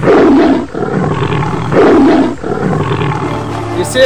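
A big cat roaring twice: two loud roars, one at the very start and one about two seconds in, with fainter rumbling between and after.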